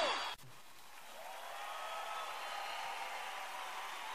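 A forró band's song ends abruptly a moment in. Then comes a faint steady hiss with distant crowd voices, the crowd noise of a live show between songs.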